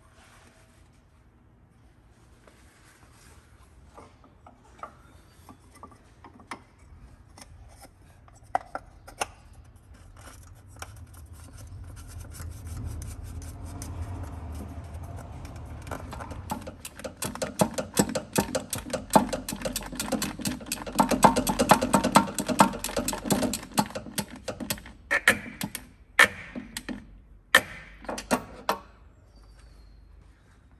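Ratchet wrench clicking while bolts under a car are turned during an automatic transmission oil filter change. It begins as scattered ticks, builds to a dense run of rapid clicks about halfway through, then gives a few separate louder clicks near the end.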